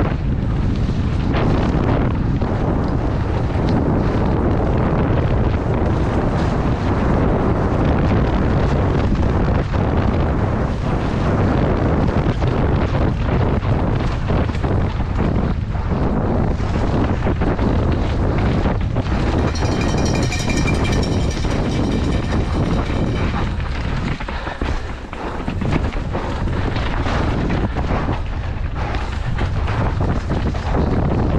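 Downhill mountain bike ridden fast over a rocky dirt trail, heard from a helmet-mounted microphone: steady wind buffeting with constant rattles and knocks from tyres and bike. About two-thirds of the way through, a high whine with several overtones sounds for about four seconds.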